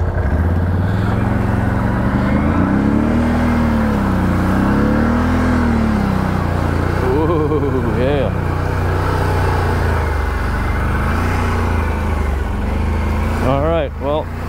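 Can-Am Renegade 1000 XMR ATV's V-twin engine running under load in four-wheel-drive low, pulling through a deep mud puddle. Its pitch rises and falls twice as the throttle changes, about three to six seconds in.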